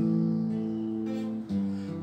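Acoustic guitar playing a held chord that rings steadily. A new chord is struck about one and a half seconds in.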